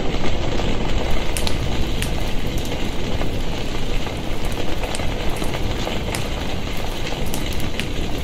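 Fire sound effect: a loud, steady rush of flames with scattered sharp crackles.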